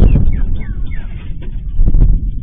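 Sonic boom from F-16 fighter jets breaking the sound barrier, picked up by a security camera's microphone: a sudden, very loud deep boom that rumbles on and surges again near the end. A few short falling chirps sound over the rumble.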